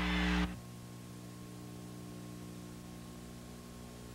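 A brief burst of noise cuts off suddenly about half a second in, leaving a faint, steady electrical hum with light hiss on the recording.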